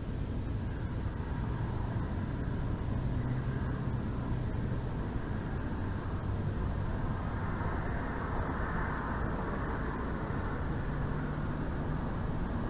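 Steady low rumble of distant engine noise, swelling briefly about eight seconds in.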